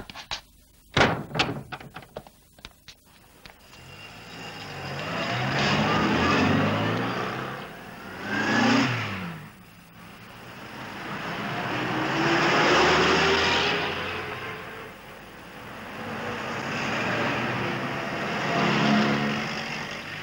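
A few sharp knocks and a bang, then street traffic: cars drive past one after another, each one swelling up and fading away, the engine note sliding in pitch as it goes by.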